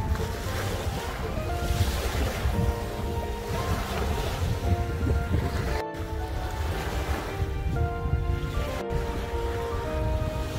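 Small waves washing up onto a sandy beach, with wind buffeting the microphone, under steady background music.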